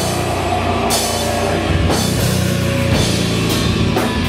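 A loud live rock band playing without a break: electric bass guitar and a drum kit with cymbals.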